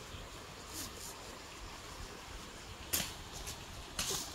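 Plastic carrier bags rustling in a few short crinkles as they are carried, with one sharper crackle about three seconds in, over a steady background hiss.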